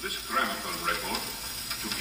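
Old gramophone record playing: a man's spoken announcement heard through heavy surface crackle and hiss, the noise of a worn disc.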